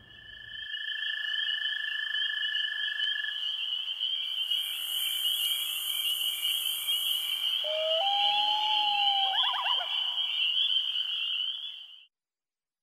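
Produced sound-effects bed under a news report's title sequence: a steady, high-pitched chirring chorus like frogs or night insects, with a plain held tone for the first few seconds and a short gliding whistle and quick chirps near the end. It stops abruptly.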